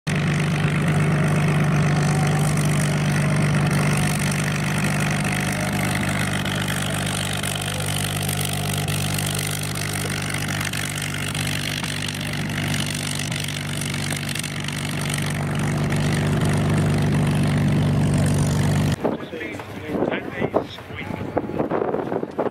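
Bell P-63 Kingcobra's Allison V-1710 V12 engine running steadily at low taxi power, a deep even drone as the fighter rolls past on the ground. Near the end the engine sound cuts off abruptly and voices are heard instead.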